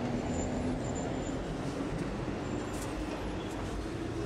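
Steady, even background noise with no speech, like a distant hum of traffic or room rumble.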